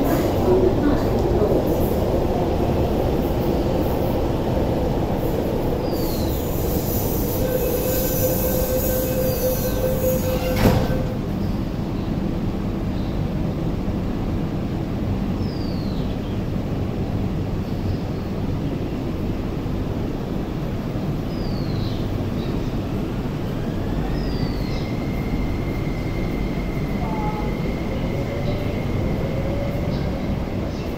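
MTR Tuen Ma Line electric trains running through the station behind platform screen doors: a steady rumble of wheels and motors. A high hiss from about six to eleven seconds ends in a sharp clunk, a few brief squeals come from the wheels, and a steady high whine starts late on, rising in pitch near the end as another train moves.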